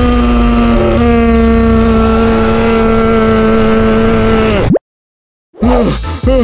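A cartoon boy's long, loud scream held on one pitch for nearly five seconds, cutting off with a falling drop. After a moment of silence, short gasping breaths begin near the end as he wakes with a start.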